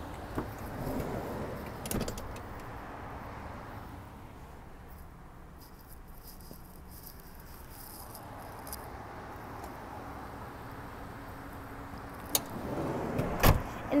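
Minivan doors being worked by hand: a couple of latch clicks near the start and a louder latch clunk near the end, with a steady outdoor hiss in between.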